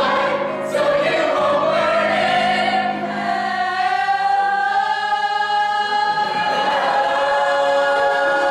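A mixed ensemble of voices singing together, the line climbing over the first few seconds and then held as one long sustained final note.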